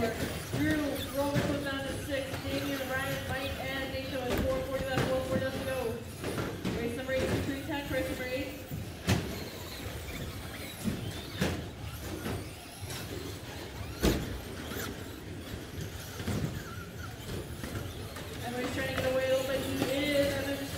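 Electric Traxxas Slash short-course RC trucks racing on a carpet track: motors whining and tyres squealing, with three sharp knocks in the middle. A race announcer's voice carries over the racing at the start and near the end.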